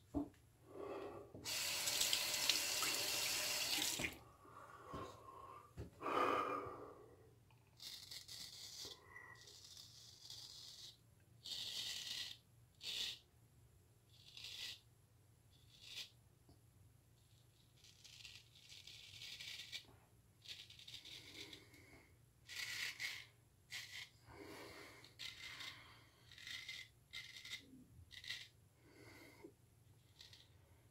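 A tap runs for about two and a half seconds near the start. After that, a Gold Dollar straight razor scrapes through lather and about three days' stubble in many short, quiet strokes.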